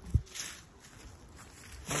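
Footsteps on a dry, leaf-strewn dirt trail: a thump just after the start, then a short rustle about half a second in, then quieter steps.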